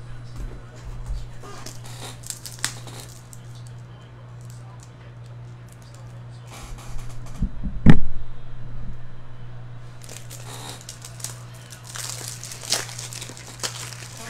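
Crinkling and rustling with scattered clicks over a steady low hum. A single loud thump comes about eight seconds in, and denser crinkling follows a couple of seconds later.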